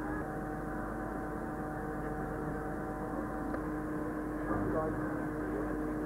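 A steady engine hum with constant tones, under faint murmuring voices.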